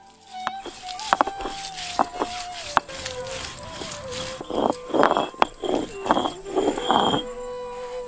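Stone grinding slab and roller (sil-batta) crushing sliced onions: a few sharp knocks of stone on stone early on, then a quick run of short wet crushing strokes, several a second, in the second half. Soft background music with a long held note runs underneath.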